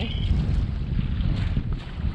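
Wind buffeting the microphone, an uneven low rumble, over the wash of choppy water aboard a small boat under way.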